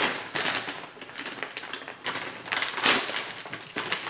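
Plastic bag of shredded mozzarella crinkling in several bursts as it is handled and its resealable tear strip is pulled open.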